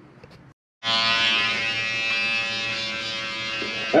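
Electric hair clippers running with a steady buzz, starting a little under a second in.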